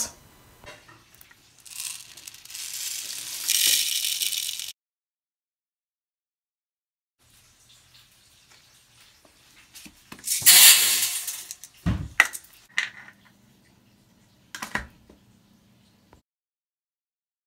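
Small hard beads poured with a rattling hiss, in two pours several seconds apart, the second tipped into the stainless steel drum of a front-loading washing machine. A few sharp knocks and clicks follow the second pour.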